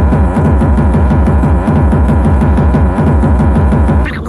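Early-1990s hardcore gabber techno: a fast, pounding kick drum beat with a steady high tone held over it.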